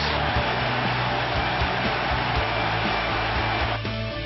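Football stadium crowd roaring just after a goal, over background music with a steady bass line. The roar cuts off suddenly near the end.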